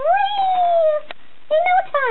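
A high-pitched, drawn-out vocal sound lasting about a second, rising sharply and then sliding slowly down in pitch. A single click follows, then speech begins.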